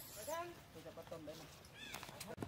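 Long-tailed macaques calling: a run of short, high-pitched squeaks and coos that bend up and down in pitch, with a higher squeal near the end.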